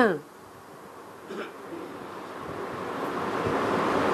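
Background hiss from the recording: a rushing noise that starts soft and grows steadily louder. A brief soft sound comes about a second and a half in.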